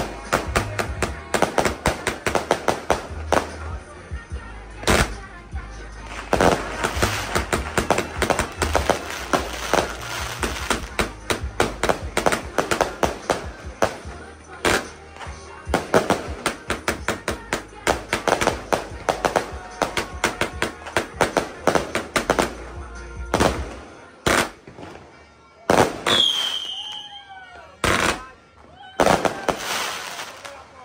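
'Galaxy 1' 111-shot fireworks cake firing its shots in rapid succession, a fast run of sharp bangs several a second. The firing thins out to a few separate shots in the last several seconds.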